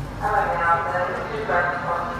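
Station public-address announcement: a voice over loudspeakers, thin-sounding, in short phrases.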